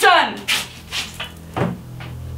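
A high-pitched vocal cry that falls in pitch and fades within the first half second, followed by a few short sharp knocks.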